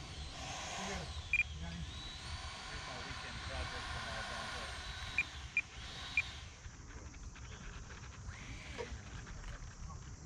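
Distant high whine of a Freewing Avanti's 80 mm 12-blade electric ducted fan, wavering in pitch as the throttle changes on approach. The whine drops away about six and a half seconds in as the power comes off for the landing.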